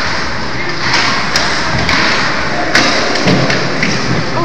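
Ice hockey play in a rink: a steady hiss of skates on the ice, two sharp clacks of sticks and puck, and a dull low thump near the end.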